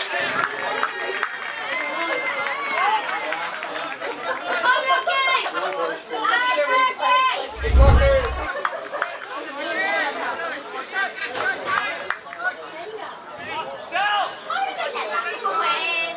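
Overlapping voices of footballers and onlookers calling and chattering around the pitch, several at once. About eight seconds in, a short low boom sounds over them as the channel's logo transition plays.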